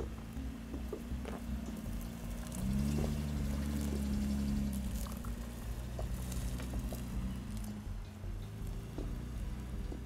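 Toyota Land Cruiser FZJ80's supercharged straight-six engine pulling under load up a steep, loose sandy hill, its drone swelling louder for a couple of seconds about three seconds in. Scattered ticks and crunches sound over it.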